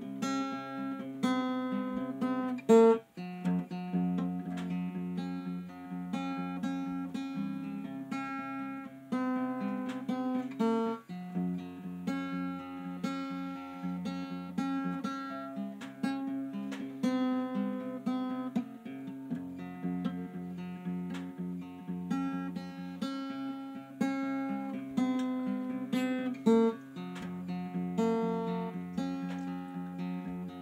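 Acoustic guitar played solo, a slow chord progression with a steady bass line under ringing chords. One sharp, louder hit comes about three seconds in.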